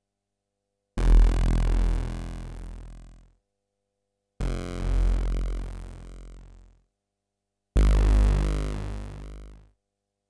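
Yamaha CS-80 analogue synthesizer playing three single low notes one after another, each sounding about two seconds and dying away, with a short silence between them. The notes are played one at a time up the keyboard from the bottom so that each is recorded as a separate sample.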